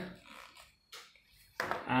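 Quiet handling noise with one soft knock about a second in: a leather instrument pouch set down on a desk.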